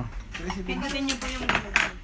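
A stack of china plates being handled and set down, clinking against each other, with two sharp clinks near the end.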